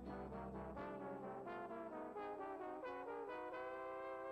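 Music: a brass instrument plays a quick run of stepped notes and ends on a long held note, over a low bass note that sounds for about the first second.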